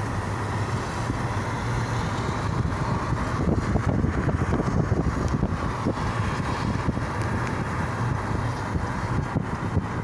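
Steady road and engine noise of a car driving at speed, heard from inside the car, with wind buffeting the microphone, strongest in the middle.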